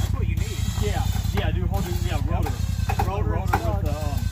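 Polaris RZR side-by-side engine running steadily at low revs with a pulsing low rumble, while people talk indistinctly over it.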